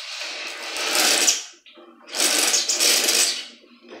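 Espresso machine's Ulka-type vibratory pump buzzing in two runs of about a second and a half each, with a short pause between, pushing water out through the group head to flush it.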